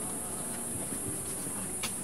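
A steady, high-pitched insect drone. A single sharp click sounds near the end.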